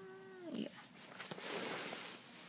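Paper rustling from about a second in as a large 12x18-inch sketchbook page is handled and turned.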